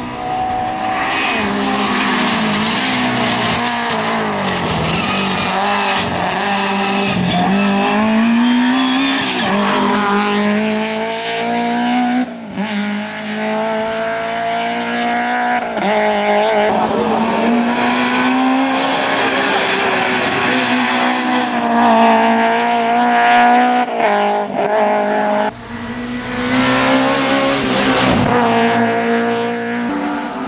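Hillclimb race car's engine under hard acceleration, its revs climbing and dropping again and again as it shifts through the gears and lifts for the bends. The sound cuts out sharply twice, about twelve seconds in and again near the end, before the revs pick up again.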